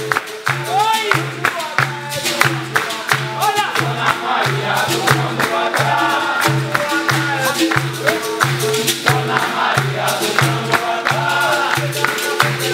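Capoeira roda music: berimbaus and an atabaque drum keeping a steady beat, with the circle clapping along and the group singing.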